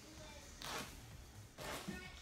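Two soft swishing strokes through a damp wig's hair, about a second apart, as the hair is smoothed and brushed down.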